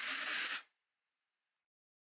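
A short hiss of air drawn through a vape's rebuildable dripping atomizer as it is puffed, lasting under a second and then stopping.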